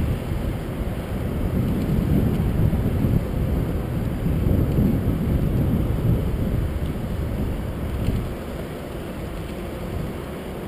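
Wind buffeting a small action camera's microphone high up on a building's edge: a gusty low rumble that eases a little about eight seconds in.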